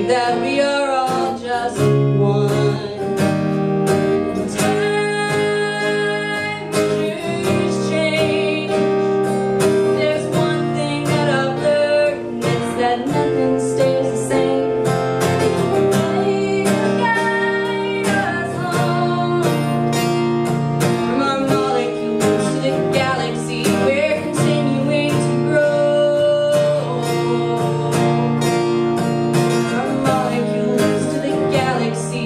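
A woman singing with her own strummed acoustic guitar, a live solo performance.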